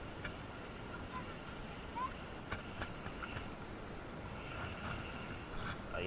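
Quiet shoreline ambience: a steady low hiss of wind and water with a few faint clicks.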